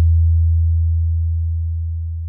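A single deep electronic bass tone from a Bhojpuri DJ remix, held alone after the beat has stopped and slowly fading as the track's closing note.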